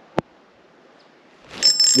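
A single sharp click, then, about a second and a half in, a metallic ringing whir from a Lew's Mach Lite spinning reel as a trout is hooked.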